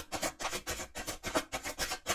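Tarot deck being shuffled by hand: quick, repeated swishing strokes of cards sliding against each other, about five or six a second.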